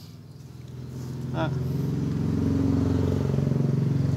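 A motor vehicle's engine, a steady low hum that grows louder over the first three seconds and then holds.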